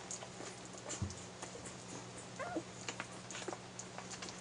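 One-week-old Airedale terrier puppies suckling at their mother, with many small wet clicks and smacks and a short squeaky whimper from a puppy about two and a half seconds in. There is a soft thump about a second in, over a steady low hum.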